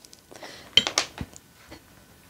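A few light clicks and clinks about a second in, from a paintbrush against a white ceramic watercolour palette as it is loaded with paint.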